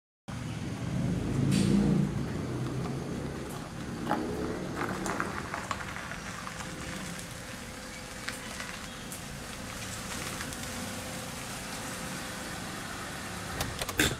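Small hatchback car, a Hyundai Eon, driving slowly up a paved driveway with its engine running and pulling to a stop, with a sharp click at the very end.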